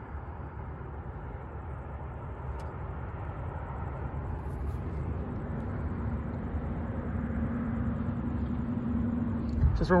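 Gas mini bike's small engine running as it rides along, over a low rumble. About halfway through a steady engine note comes in, and the sound slowly grows louder.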